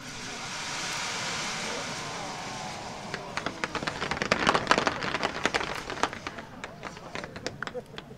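A mass salvo of fireworks rockets launching together with a rushing hiss. About three seconds in it turns into a dense crackle of many bursts, heaviest around the middle and thinning toward the end.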